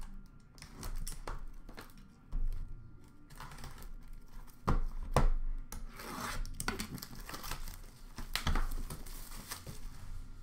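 Plastic wrapping being torn and crinkled off an Upper Deck The Cup hockey card tin, with a few sharp knocks as the tin is handled.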